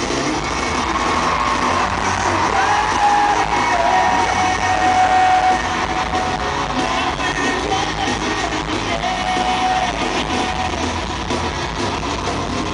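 Live pop-rock band playing with a sung vocal line of long held notes over it, heard from the audience in a large arena hall.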